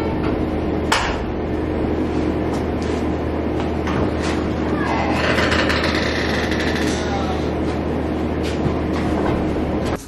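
Steady mechanical hum with a constant low pitch, with one sharp click about a second in.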